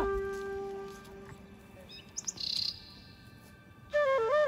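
A held flute-like note of background music fades out over the first second. A bird then gives a few quick, high chirps about two seconds in.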